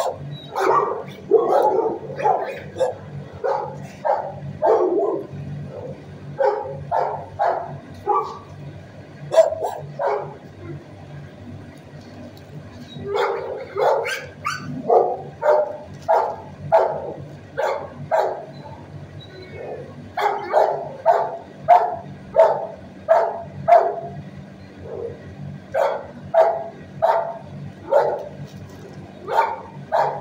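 Shelter dogs barking repeatedly in runs of short barks with brief pauses between, over a steady low hum.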